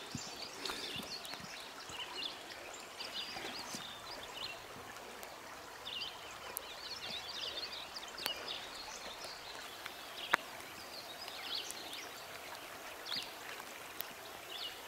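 Shallow river running over rocks, with many birds chirping throughout. One sharp click about ten seconds in.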